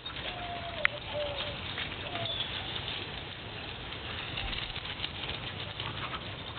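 Outdoor yard ambience with a bird calling in a few soft, drawn-out hooting notes in the first couple of seconds, over a low steady hum. There is a single sharp click just under a second in.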